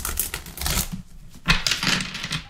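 Tarot cards being riffle-shuffled by hand on a tabletop: a rapid fluttering rattle of cards that ends just under a second in, then a second riffle starting about a second and a half in.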